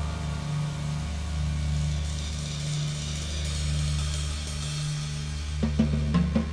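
Instrumental 1970s jazz-rock band recording: sustained low bass and keyboard notes under a cymbal shimmer that grows about two seconds in, with a few sharp drum-kit hits near the end.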